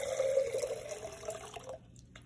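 Water poured from a glass jar through a wire-mesh screen into a glass mason jar, a steady pour that stops a little before two seconds in.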